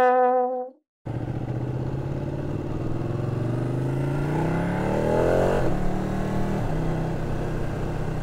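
A short electronic logo tone ends about a second in, then a Ducati 1299 Panigale's L-twin engine runs on the move. Its pitch rises as the bike accelerates and drops sharply a little past halfway, then holds steady.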